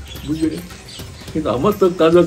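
A dove cooing, low and brief, about a third of a second in, with a man's voice starting near the end.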